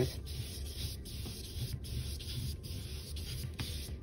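A flat paintbrush loaded with acrylic paint rubbing over the painting surface in repeated up-and-down strokes, a faint scratchy brushing.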